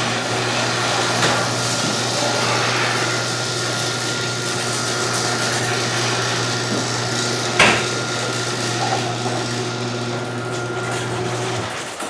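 Electric garage door opener running steadily as a sectional garage door rises, with one sharp clack about seven and a half seconds in; the motor cuts off just before the end.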